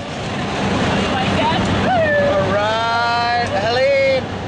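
Steady engine and wind noise in a skydiving plane's cabin during the climb. Over it, from about a second in, a woman's voice gives high excited squeals, one of them long and held, without words.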